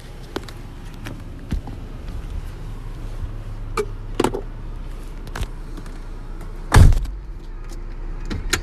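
A Kia car's door shutting with one heavy thump about seven seconds in. Before it come scattered knocks and clicks of a phone being handled, over a low steady hum.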